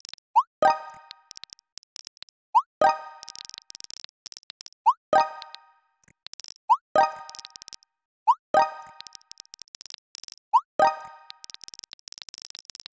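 Message-pop sound effect of a texting app, repeated six times about every two seconds as each new message bubble appears: each is a quick rising blip followed by a bright pop. Between the pops come rapid, faint keyboard tap clicks.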